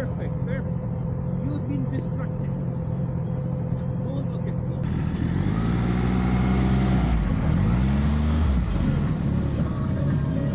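A motorcycle engine runs steadily at low revs. About halfway through it revs up in a rising pitch, dips briefly and rises again, getting louder as it accelerates.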